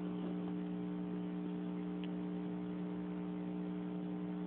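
A steady electrical hum, unchanging, with a couple of faint ticks a few seconds apart.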